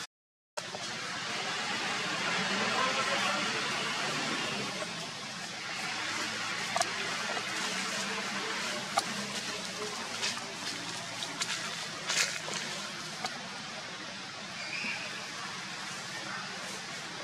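Steady outdoor background noise with faint, indistinct distant voices and a few small clicks, after a brief dropout to silence at the start.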